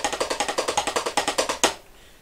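Wooden drumsticks playing fast, even strokes on a Power Beat 14-inch rubber practice pad resting on the knee: a dry, quick tapping with no drum resonance. It ends with one louder accent stroke a little over a second and a half in.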